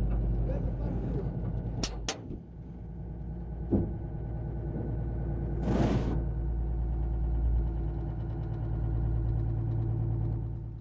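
Engine of a Mamba armoured police vehicle running steadily while the vehicle drives. About two seconds in come two sharp clicks and the engine briefly eases off, there is another click a little later, and a short hiss about six seconds in.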